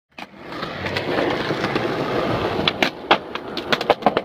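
Skateboard wheels rolling steadily on a concrete sidewalk, followed over the last second and a half by a run of sharp clicks and knocks.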